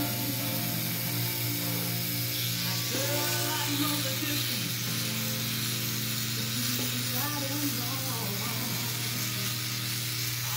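Handheld electric beard trimmer buzzing steadily as it cuts neck stubble, under a slow pop song with a male singing voice.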